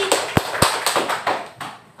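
A quick run of sharp taps: two loud ones about a quarter second apart near the start, then lighter ticks that fade out over about a second.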